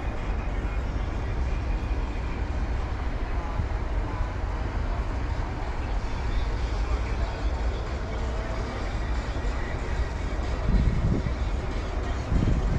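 Outdoor city ambience: a steady rumble of road traffic with indistinct voices of people nearby, and two louder low rumbles near the end.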